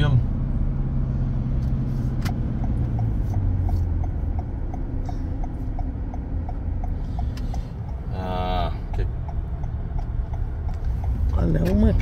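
Road and engine noise inside a moving car: a steady low hum that drops in pitch about three seconds in. Over it comes a regular ticking, about two to three a second, from about two to nine seconds in, typical of a turn indicator. A short drawn-out vocal sound comes about eight seconds in.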